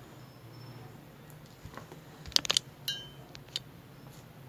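Small hard embroidery beads and sequins clinking as they are handled in a dish: a quick cluster of sharp clicks a little past halfway, then a short ringing clink and one last tick.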